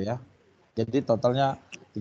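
Only speech: a man's voice counting numbers aloud in Indonesian, with a short pause between phrases.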